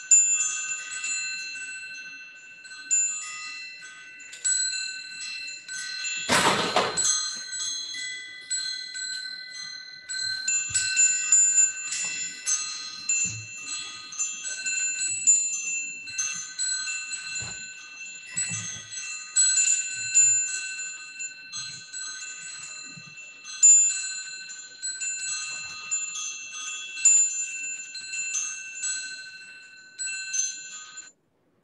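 Wind chimes ringing: many high metal tones struck at random and overlapping without a beat. About six seconds in there is a brief loud rushing noise.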